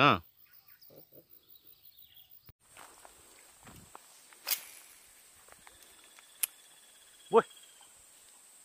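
Quiet outdoor ambience broken by a few isolated sharp clicks, the loudest about halfway through. A faint steady high tone comes in near the end, and a short rising vocal sound follows it.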